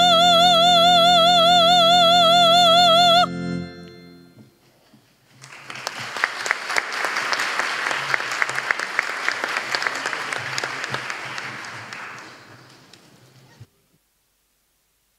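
A woman's voice holds the final note of a song with wide vibrato over a sustained instrumental accompaniment. Both stop together about three seconds in and ring briefly in the large hall. After a short pause, an audience applauds for about seven seconds, the clapping fading out near the end.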